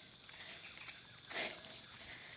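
A steady, high-pitched chorus of insects trilling in the vegetation, with one soft scuff about one and a half seconds in.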